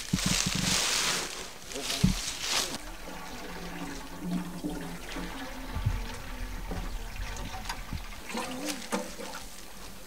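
Water splashing and pouring loudly for the first two or three seconds, then a quieter stretch with a few faint voices near the end.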